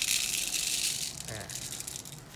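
Thin plastic packaging crinkling as it is pulled off a small plastic part, loudest in the first second and then fading.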